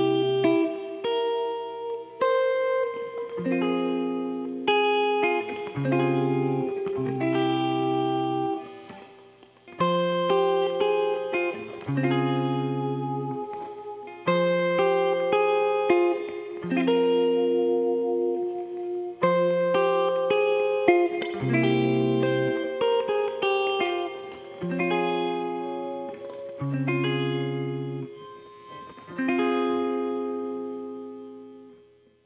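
Instrumental music led by a guitar picking chords and single notes that ring out and fade, played through effects.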